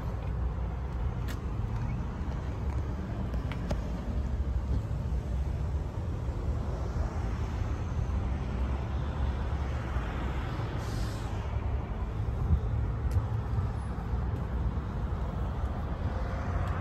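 Steady low rumble of road traffic around an outdoor car yard, with a brief hiss about eleven seconds in and a few faint clicks.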